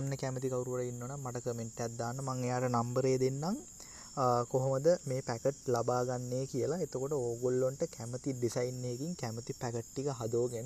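A voice narrating in Sinhala, with brief pauses, over a steady faint high-pitched whine.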